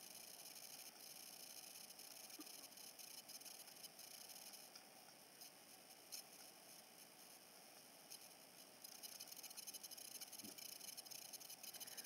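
Near silence: faint room hiss with a few soft, isolated clicks.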